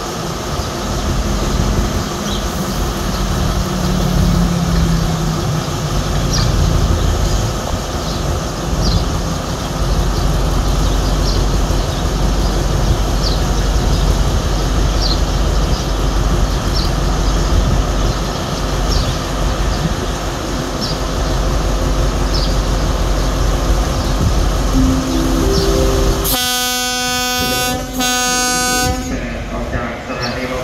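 Alstom AD24C diesel-electric locomotive running its diesel engine at low speed as it draws a passenger train into a station, with faint regular ticks in the first half. Near the end it sounds two blasts on its horn.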